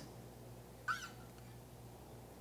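Quiet room tone with a steady low hum, broken about a second in by one brief, faint, high-pitched squeak.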